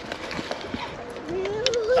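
Spinning reel being cranked to wind in a small catfish, with a few faint clicks; a voice rises near the end.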